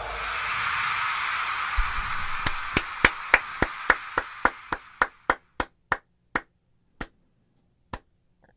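Hand clapping by one person: single sharp claps starting about two seconds in, about three a second at first, then slowing and spacing out to about one a second near the end. Under the first claps, a crowd cheer fades away.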